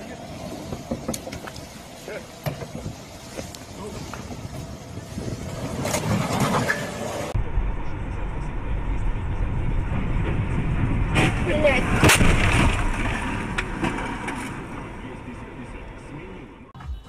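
Car and road noise with people talking, building to a loud burst of noise about eleven to twelve seconds in.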